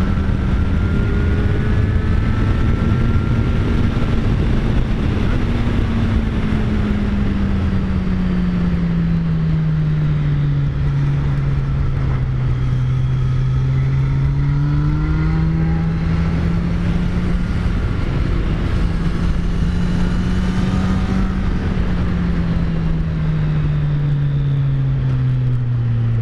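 Kawasaki Z900's inline-four engine running at steady throttle on a climb. Its note sinks slowly through the middle, rises again, then falls near the end, over loud wind rush on the helmet microphone.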